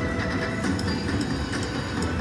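Autumn Moon video slot machine playing its spinning-reels sound and music during a free game, with short clicks as the reels come to a stop, over casino background noise.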